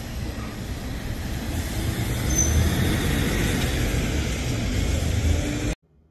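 City street traffic, with a heavy vehicle's engine rumbling and growing louder through the middle and a brief high squeal about two and a half seconds in. The sound cuts off suddenly just before the end.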